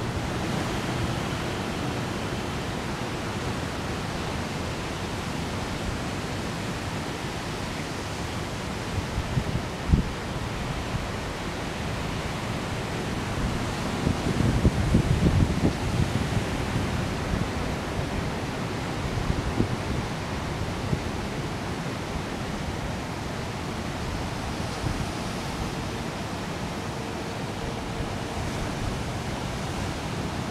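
Steady rushing ambience of ocean surf breaking on the beach, with low thumps on the microphone about ten seconds in and again between fourteen and sixteen seconds.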